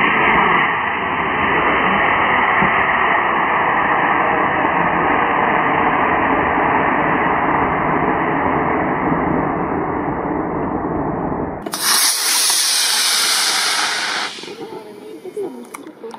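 Estes model rocket's C6-5 black-powder motor firing at liftoff: a long, dull, steady rushing hiss, then near the end a brighter hiss with a sweeping quality for a couple of seconds before it drops away.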